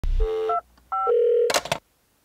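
Electronic beeping tones in two short groups, each stepping between a few pitches like keypad or dialing tones, followed by a brief noisy burst near the end.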